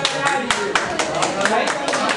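Scattered hand clapping from a few people: sharp, irregular claps several a second, with a voice talking underneath.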